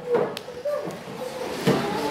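A child's faint, hesitant voice reading a word aloud in a classroom, in short soft fragments. There is a single light tap about a third of a second in.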